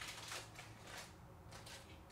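Aluminum foil wrapping being pulled open by hand, with faint, irregular crinkling and rustling.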